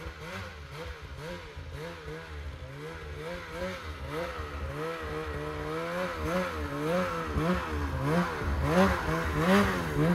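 Snowmobile engine revved up and down in quick, repeated throttle blips, about two a second, as the sled works through deep powder; it grows louder as the sled comes closer.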